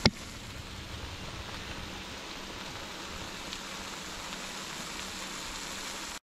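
Octopus in coconut milk sauce simmering in a wok, a steady hiss with scattered faint crackles. A single sharp knock comes right at the start.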